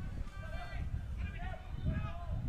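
Soccer players' faint shouts and calls across the pitch over a steady low rumble of outdoor field noise.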